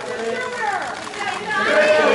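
Indistinct chatter: several voices talking at once, with no one voice standing out.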